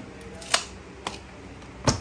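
Handling of a leather bag and tape measure: a sharp click about half a second in, a smaller one about a second in, then a louder knock near the end as the bag's hinged, metal-framed top is shut.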